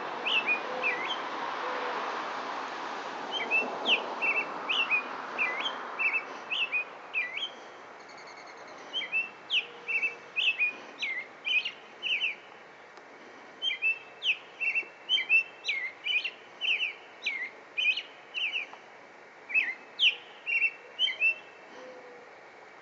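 American robin singing: bouts of short, clear whistled phrases in quick succession, broken by brief pauses. A steady background noise is heard under the song for the first few seconds, then fades.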